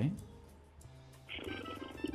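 A caller's voice over a phone line: after a short pause, a low, creaky, drawn-out hesitation sound, thin and narrow like telephone audio, begins about a second and a half in.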